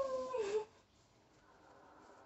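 A woman's short whimpering cry of distress that falls in pitch and lasts about half a second, then faint breathing, during a stiff person syndrome episode.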